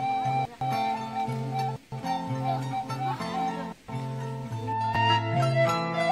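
Background instrumental music: a held melody over a bass line that steps to a new note about every half second, with a few brief dropouts. About five seconds in the texture changes as a plucked-string passage starts.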